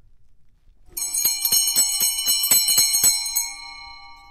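A short musical sting of quickly struck bells, starting about a second in: several high ringing tones over rapid strikes, fading out near the end. It marks a break between segments of the show.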